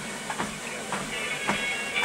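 Footfalls on a treadmill belt at a walking pace of 5 km/h, about two steps a second, over the running machine.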